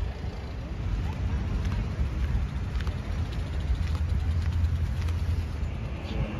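City street traffic: a steady low rumble of passing motor vehicles.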